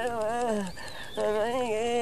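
A voice chanting in long, wavering held notes, with a short break about halfway through.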